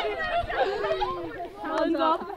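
Several women's voices chattering and calling out at once, overlapping excitedly.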